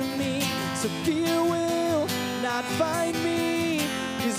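A man singing a slow worship song, holding long notes, over a strummed acoustic guitar.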